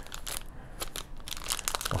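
Plastic bag holding tire plugs crinkling and crackling as it is handled, in scattered short crackles that thin out for a moment in the middle.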